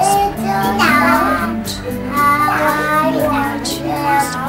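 A young child singing while playing a digital piano: held piano notes under a high, sliding child's voice.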